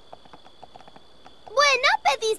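Light cartoon pony hoofsteps, a quick run of soft taps. About a second and a half in, a high, excited female cartoon voice starts talking over them.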